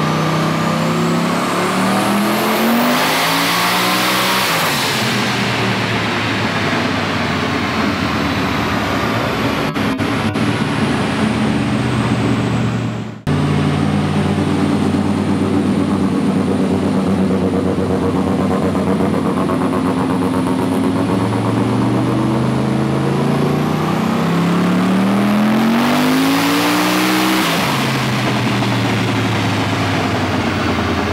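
Turbocharged Toyota 1UZ V8 in a KE20 Corolla run at full throttle on a chassis dyno: the engine note climbs steadily in pitch over a few seconds with a high whine rising alongside, and holds at high revs. After an abrupt break about 13 seconds in, the engine runs at a steady note, climbs again in a second pull, and drops away as the throttle is released near the end.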